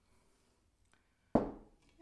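A heavy glass hurricane vase set down on a wooden table: one sharp knock about a second and a half in, fading over half a second.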